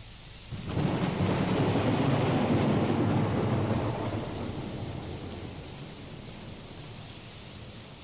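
Recorded thunderstorm: a long roll of thunder over steady rain. The thunder comes in about half a second in, is loudest over the next few seconds, then slowly dies away, leaving the rain.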